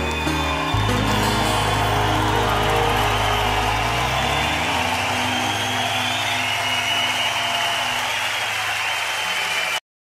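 A live acoustic rock band's closing chord rings out over a cheering crowd. The music dies away about halfway through, leaving the crowd noise, and the sound cuts off abruptly just before the end.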